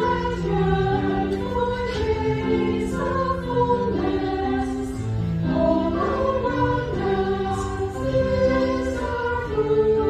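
Church choir singing, many voices together on held notes that step from pitch to pitch.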